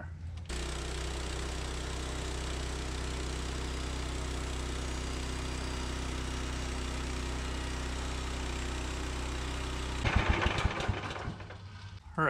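Gas engine of a Woodland Mills HM126 portable band sawmill running steadily while the mill rips a board. It comes in abruptly just after the start and holds at one pitch, then turns louder and rougher near the end before dying away.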